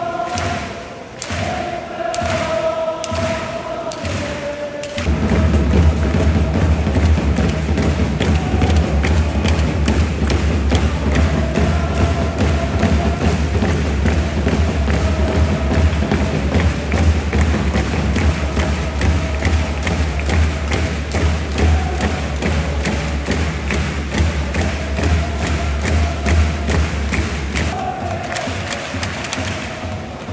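Football supporters' section chanting in unison to drum beats. About five seconds in the drumming turns much louder and faster under the chant, easing off near the end.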